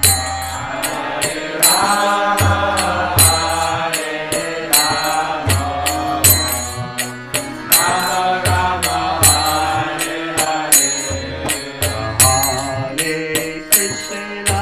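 A man's voice leading a devotional chant, with hand cymbals (karatalas) struck in a steady rhythm and deep drum-like beats under it.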